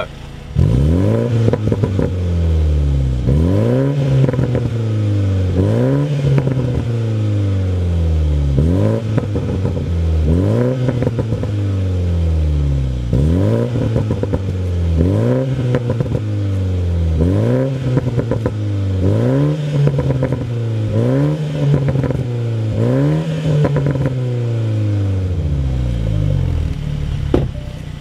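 2020 BMW Z4 (G29) two-litre four-cylinder engine revved repeatedly with the car standing still: about a dozen quick blips roughly every two seconds, each climbing and then falling back, with exhaust pops and crackles as the revs drop.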